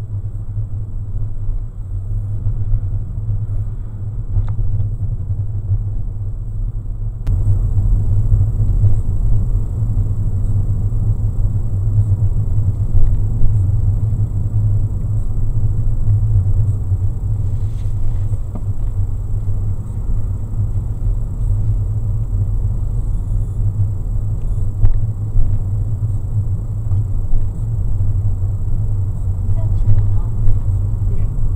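Steady low rumble of a car's engine and tyres heard from inside the cabin while driving at low speed, with a few faint clicks. It turns slightly louder and brighter about seven seconds in.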